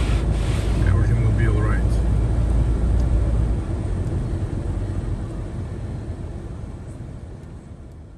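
Steady low rumble of a car's engine and tyres on a wet road, heard from inside the cabin, fading out gradually over the last few seconds.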